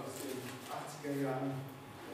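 A man speaking in German, giving a lecture, with a drawn-out low sound about a second in.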